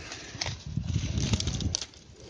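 Strong wind buffeting the microphone in uneven gusts, with grapevine leaves rustling and crackling as a hand pushes them aside.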